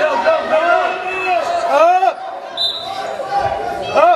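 Short, squeaky arched tones of wrestling shoes and bodies on the mat during a match, the sharpest about halfway through, mixed with scattered voices echoing in the gym.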